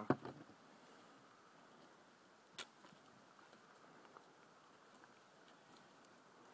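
Faint, steady outdoor background hiss broken by a few short, sharp clicks, the loudest about two and a half seconds in.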